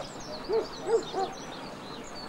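A bird giving three short, low hooting calls about a second in, the middle one loudest, with small birds chirping high in the background.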